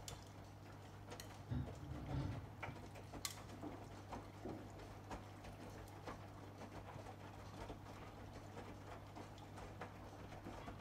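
AEG Lavamat Protex front-loading washing machine in its wash tumble: a steady low hum from the turning drum, with wet laundry flopping and scattered soft clicks. Two low thuds come about one and a half to two and a half seconds in as the load drops in the drum.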